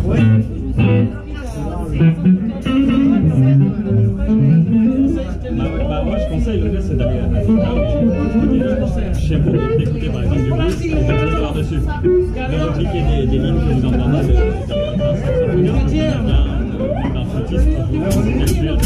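Live blues band playing: electric guitar and bass guitar over drums, with voices over the music.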